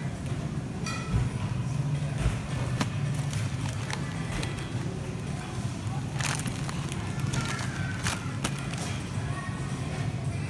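Supermarket freezer-aisle ambience: a steady low hum under faint background music, with sharp clicks and knocks as a freezer-case door and a cardboard box of frozen fruit bars are handled, the loudest about six and eight seconds in.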